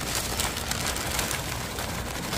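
Brown paper bag of fries being handled and opened, the paper crinkling and rustling steadily with many small crackles.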